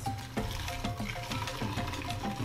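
Blended horchata being poured from a blender jar through a mesh strainer into a glass pitcher: a steady splashing trickle of liquid. Background music with short repeated notes plays under it.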